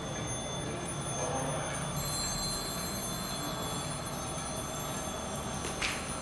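Steady low electrical hum with several faint, steady high-pitched electronic whines, from a room full of running CRT television sets; a single sharp click near the end.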